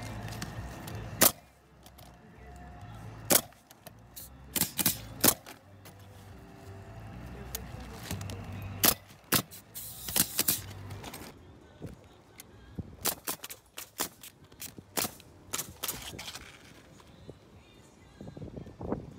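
Pneumatic coil roofing nailer firing nails through ridge cap shingles: sharp shots every second or two, some in quick pairs or triples.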